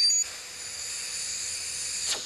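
Compressed air rushing from a hand-held air tube on a hose: a loud, whistling blast at first that settles after about a quarter second into a steady hiss.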